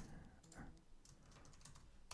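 Faint typing on a computer keyboard: a few quiet, scattered key clicks as a short command is entered.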